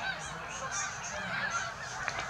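A large migrating flock of geese honking from high overhead: many faint, short calls overlapping in a continuous chorus.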